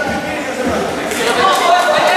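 Many overlapping voices chattering and calling out in an echoing gym hall, with no single clear speaker; the voices grow louder a little past the first second.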